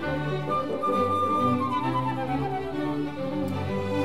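Symphony orchestra playing classical music, bowed strings to the fore, with a melody that falls in a descending run through the middle.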